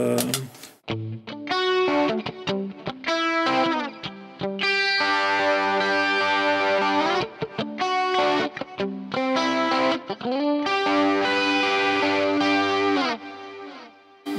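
Electric guitar played through a Fractal Axe-FX III modelling processor with a slightly distorted tone: short picked phrases leading into two long, ringing held chords.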